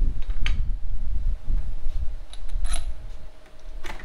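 Steel link bar and mounting bracket being handled against a steel fab table: a few light clinks and knocks, with one brief metallic ring a little past halfway, over a low rumble that eases off in the second half.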